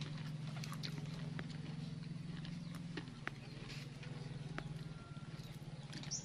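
Chewing of corn on the cob: irregular sharp clicks and smacks, about two a second, over a steady low hum.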